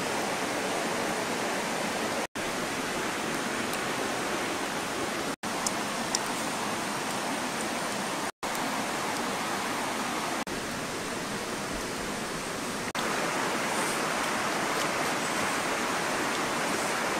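Steady rush of flowing river water, cut off briefly three times, about two, five and eight seconds in.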